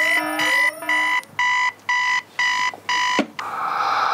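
Mobile phone alarm beeping, about two short even beeps a second, cut off with a click a little after three seconds in; a rushing hiss follows.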